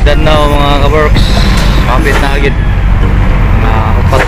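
Steady low rumble of a bus's engine and road noise inside the passenger cabin, with a voice over it in short phrases.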